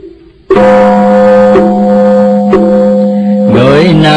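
A male chanting voice holds one long, steady note for about three seconds, then moves on into the next chanted phrase near the end. A light knock falls about once a second under it.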